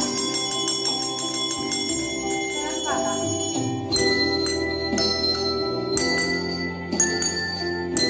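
Colourful press-down desk bells struck one note at a time, each note ringing on, over a recorded instrumental backing track. In the second half the strikes fall about once a second.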